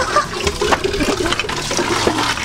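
Water running and splashing at an outdoor faucet, a steady rushing gush.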